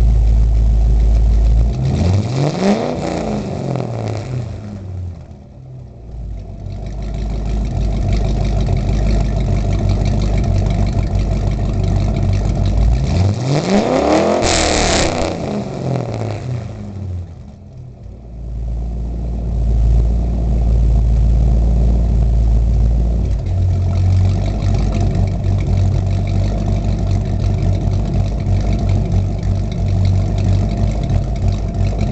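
1991 Mercury Grand Marquis with a Mustang engine and 2.5-inch dual exhaust, heard at the tailpipes. It is idling and is revved twice, about two seconds in and again about thirteen seconds in. Each rev rises and falls back, the exhaust dips quiet for a moment as the throttle closes, then it settles back to idle.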